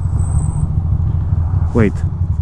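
2006 Ducati Monster 620's air-cooled L-twin engine running steadily while the bike is ridden, a low, evenly pulsing rumble.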